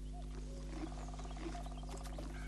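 Faint outdoor ambience: an animal's rapid rattling call over a steady low hum.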